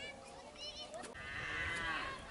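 A cow mooing once, a long call that begins a little over a second in, over brief voices.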